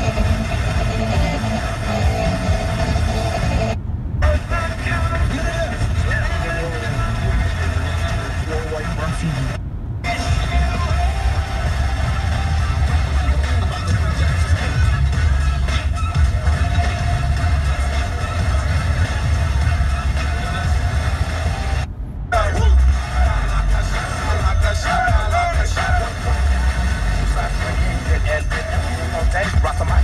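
Car dashboard FM radio being stepped up the band one frequency at a time, playing a few seconds of each station's music and talk. The sound cuts out briefly three times as the tuner jumps to the next frequency. A steady low rumble from the car runs underneath.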